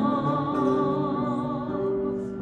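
A choir singing a slow hymn in long held notes with a gentle vibrato, the pitch changing only a few times.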